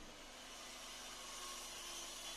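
Faint steady whooshing hiss from an electric wall fan running, with a few faint steady tones in it.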